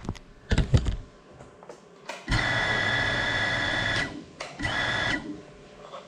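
A few knocks as the GEPRC Cinelog 35 FPV drone is handled, then its brushless motors and ducted propellers spin at a steady pitch for under two seconds, stop, and spin up again briefly.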